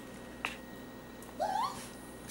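Raccoon giving one short, rising, wavering call about one and a half seconds in, after a single sharp click near the start.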